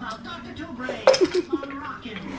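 A sharp clink about a second in, followed by a short laugh.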